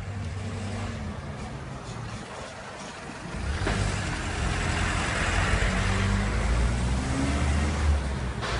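A motor vehicle's engine running in the street, growing louder with tyre noise about halfway through as it passes close by.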